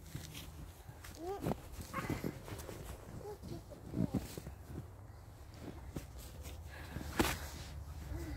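A young child's short vocal sounds, little hums and grunts, over soft footsteps in deep snow, with one sharp click about seven seconds in.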